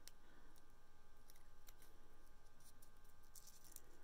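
Faint light ticks and crinkles of a small paper strip being curled between the fingers, over a low steady room hum.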